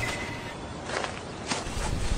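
Footsteps on a forest floor of dry leaf litter, two steps standing out about a second in and half a second later.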